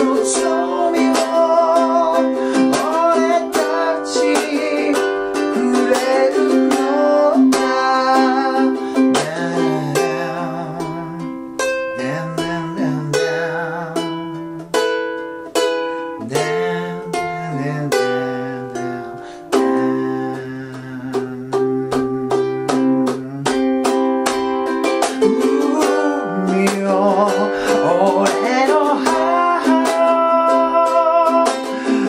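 G-LABO ukulele strummed in a sixteenth-beat rhythm with muted chucks while a man sings a Japanese ballad. About a third of the way in the singing stops for an instrumental interlude of picked arpeggios and strummed chords, and the singing returns near the end.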